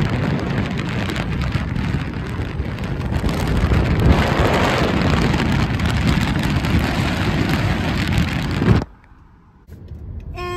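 Loud wind and road noise in a car driving at speed, an even rush with no engine tone, cutting off suddenly near the end.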